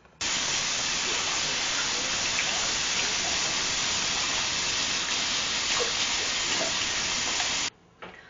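A shower running: a steady, even spray of water hiss that cuts in abruptly just after the start and cuts off abruptly near the end.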